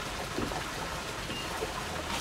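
Steady splashing of a wall fountain spout pouring into a swimming pool, an even rushing of water.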